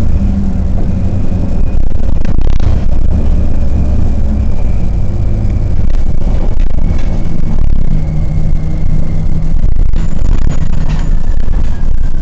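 Orion VII city transit bus under way, heard from inside the passenger cabin: a loud, steady low rumble from the drivetrain and road, with a faint high whine that drifts slowly down in pitch and a few short rattles.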